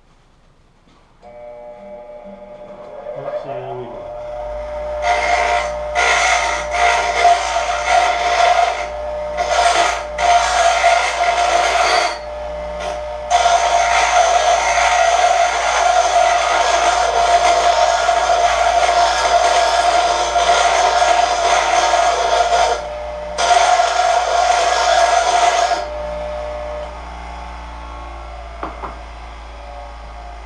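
Bench grinder switched on and spinning up, then a hand-cut steel plate pressed against the wheel in a run of grinds with short pauses, tidying the piece down to its marked lines. Near the end the wheel runs on unloaded.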